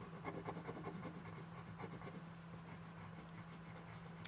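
Crayola colored pencil scratching on drawing paper, pressed fairly hard in short quick strokes. A quick run of strokes comes in the first second and a few more near two seconds in.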